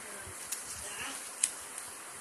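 Card jigsaw puzzle pieces being slid and pressed on a glass tabletop: soft scraping with two sharp taps, the louder one about a second and a half in, over a faint steady hiss.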